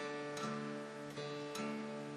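Acoustic guitar picked a few times, its notes ringing on between plucks. This demonstrates the altered tuning, with the low E string dropped to D.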